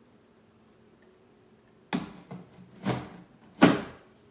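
Nearly two seconds of quiet, then three knocks about a second apart, the last the loudest. The knocks come from the metal case of an Antminer S9 bitcoin miner being set down into a glass fish tank lined with gravel.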